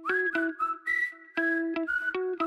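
Background music: a whistled tune over plucked guitar with a steady pulse.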